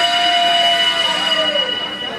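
A loud, long horn-like tone, several pitches sounding together, held for nearly two seconds and dipping slightly in pitch as it ends, over room noise.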